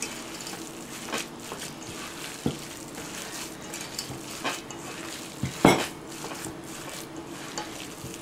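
Hands squishing and kneading a wet ground-chicken meatloaf mixture in a stainless steel bowl, with a few sharp knocks against the bowl, the loudest about three-quarters of the way through. A steady low hum runs underneath.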